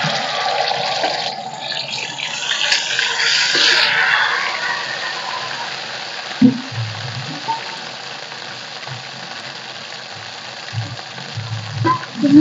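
Masala hitting hot oil in a kadhai: a loud sizzle that swells over the first few seconds, then dies down to a quieter steady sizzle. A single knock about six and a half seconds in.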